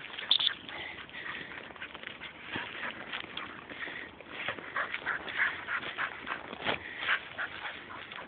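Dry bracken rustling and crackling as a springer spaniel and the person following it push through the fronds, with the dog whining at times.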